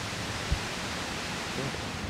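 Steady background hiss with no speech, and one soft low thump about half a second in.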